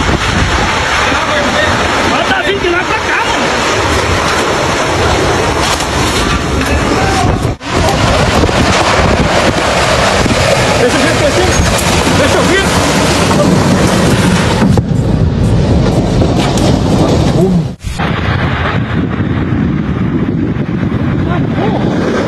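Strong storm wind from a tornado gusting loudly over a phone microphone, with indistinct voices underneath. The sound breaks off abruptly twice, about seven and a half and eighteen seconds in.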